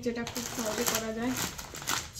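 A woman's voice talking, with the light crinkle and rustle of plastic snack packets being handled.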